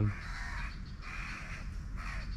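A crow cawing in the background: two harsh calls in quick succession, with a third starting at the end.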